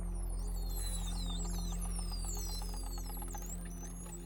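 Many overlapping dolphin whistles, high calls sliding up and down, with fast ticking clicks, over a low steady music drone.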